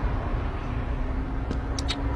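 Low, steady rumble of a car idling, heard from inside its cabin, with a few sharp tongue clicks near the end.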